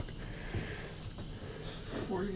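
Quiet room noise with a short breath or sniff near the end.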